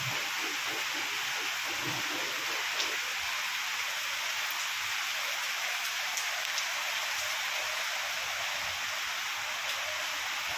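Steady rain falling, an even hiss with a few faint ticks of drops.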